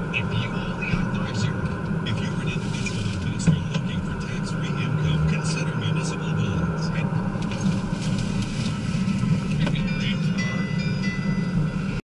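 Steady low engine and road noise inside the cabin of a car being driven.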